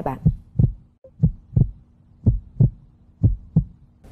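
Heartbeat sound effect: four pairs of low thumps, about one pair a second, over a faint steady drone, laid in as a suspense cue while the contestants decide.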